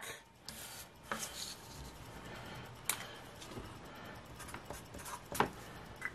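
Faint handling sounds of a cardboard scratch-off lottery ticket on a wooden table: the card being turned over and written on with a felt-tip marker. A few short sharp clicks and taps are spread through.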